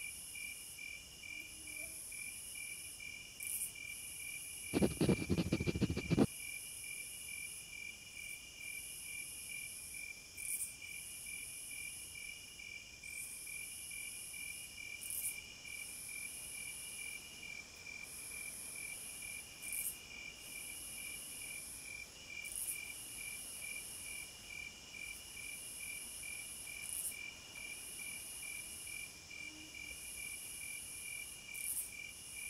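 Insects chirping in a steady, fast-pulsing trill, with a second, higher call coming in phrases of about a second and a half. About five seconds in, a short loud burst of rapid knocks lasts about a second and a half.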